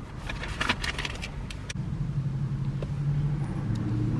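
Camaro ZL1's supercharged V8 idling with a steady low hum. There are a few sharp clicks and light knocks in the first couple of seconds as the camera is handled.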